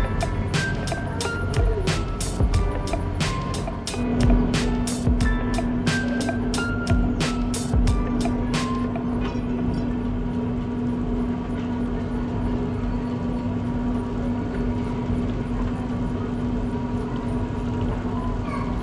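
Incline railway car running along its steep track, giving a steady mechanical rumble; about four seconds in, a steady hum joins and holds. For the first nine seconds or so, background music with quick plucked notes plays over it, then stops.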